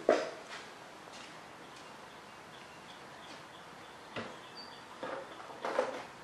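Handling noise on a workbench: a sharp click right at the start, then a few faint clicks and a knock about four seconds in, with a short cluster of small sounds near the end, over a low steady hiss.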